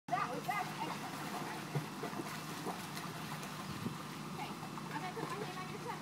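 Indistinct, high-pitched voices chattering in the background of a swimming pool, with light splashing from a child kicking in the water.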